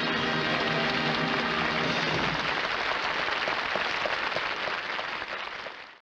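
A jazz band with trumpet, saxophone and trombone holds its final chord to the end of the number, stopping a little over two seconds in. Audience applause carries on after it and cuts off at the very end.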